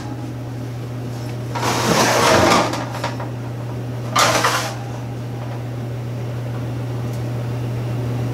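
Bottom rack of a home electric oven being pulled out on its metal runners: a sliding scrape lasting about a second, then a shorter, higher scrape a couple of seconds later, over a steady low hum.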